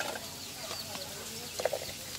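A bird calling: faint short chirps throughout and one louder call near the end.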